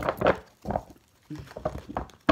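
A deck of tarot cards being shuffled by hand: a few short, soft rustles and slaps of the cards.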